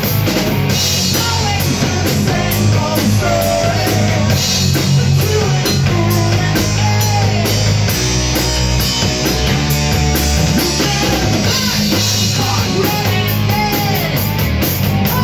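Rock band playing a song live: drum kit and electric guitars with a singer singing into a microphone, loud and continuous.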